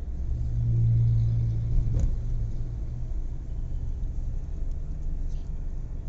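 Low rumble of a moving road vehicle heard from inside the cabin, with engine and road noise; a low steady drone swells in the first few seconds and then fades back, and there is a single click about two seconds in.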